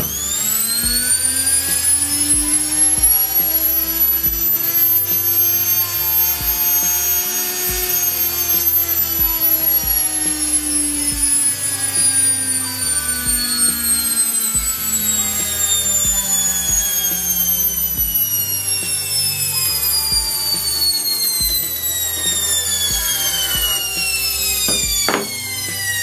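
A washing-machine universal motor with carbon brushes, wired straight to 220 V mains and running free with nothing on its shaft. It spins up over about eight seconds to a high whine, then the whine falls slowly in pitch for the rest.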